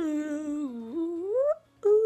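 A boy's voice drawing out one long wordless vocal sound. It dips in pitch, then slides up, breaks off briefly, and starts a second held note near the end.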